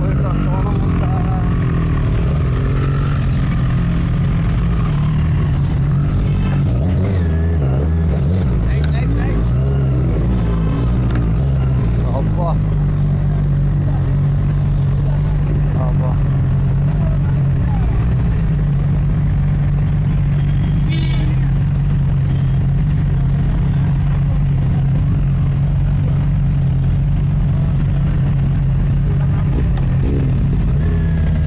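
Motorcycle engine running at a steady idle, with a constant low hum. People talk over it for a few seconds in the first half.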